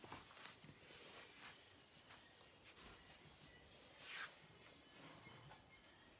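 Near silence: faint room tone with a few soft ticks and rustles, and a brief hiss about four seconds in.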